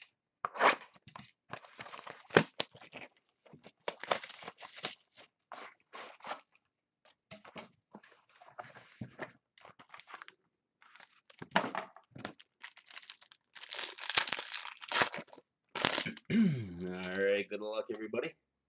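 Cardboard trading-card box being opened and its contents handled: an irregular run of crunching, tearing and rustling noises, with a short pitched squeak of cardboard rubbing near the end.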